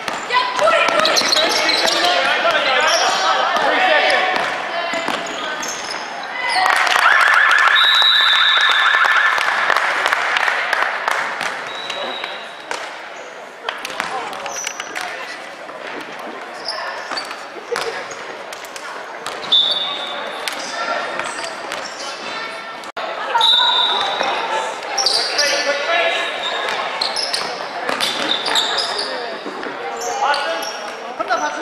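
Basketball game in a large gym hall: the ball bouncing on the hardwood floor, sneakers squeaking, and players and spectators calling out, echoing in the hall. The calling is loudest about seven seconds in.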